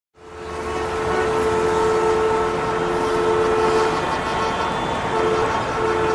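Steady background noise with a single held horn-like tone over it. The tone breaks off about four seconds in and comes back shortly before the end.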